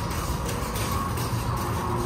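Loaded metal shopping cart rolling over a concrete walkway, a steady rumbling clatter from its wheels.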